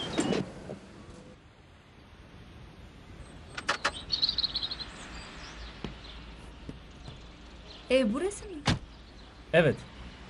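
Doors of a BMW 3 Series saloon being unlatched and opened, with a few sharp clicks a few seconds in. Near the end a door shuts with a single sharp knock, and brief voices come just before and after it.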